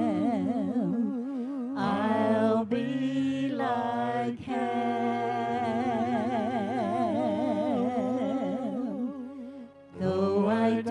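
Mixed vocal quartet of two men and two women singing a gospel song through microphones, holding long notes with heavy vibrato. The chord changes about two seconds in and again around four and a half seconds, and the singing dips away just before the end.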